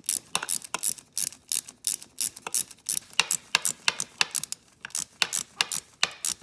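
Ratchet wrench clicking as it is swung back and forth on a bolt on the quad's engine case: a run of sharp clicks, several a second, in short strokes.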